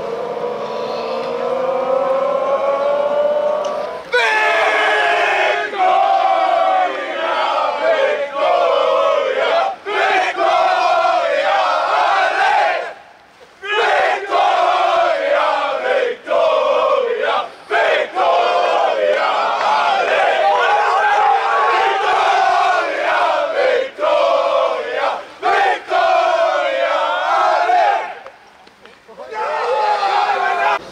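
Football team in a huddle chanting together in unison. It opens with a long, rising group shout for about four seconds, then breaks into loud chanting, with a short break about thirteen seconds in, and stops shortly before the end.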